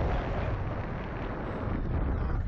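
Wind buffeting the microphone of a camera mounted on a swinging Slingshot reverse-bungee ride capsule: a steady, deep rush of air.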